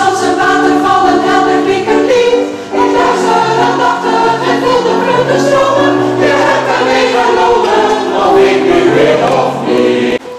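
Mixed choir of men's and women's voices singing in harmony, holding chords with a short breath between phrases a little under three seconds in.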